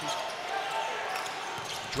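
Live basketball game sound from the court: a steady arena crowd murmur with a basketball being dribbled and played on the hardwood floor.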